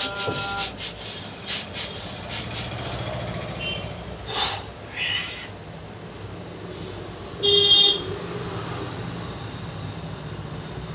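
Hands slapping and tapping a head and neck in a quick series of sharp claps over the first few seconds, then a couple of louder single strikes. A vehicle horn sounds once for about half a second, the loudest sound, over a steady low hum of traffic.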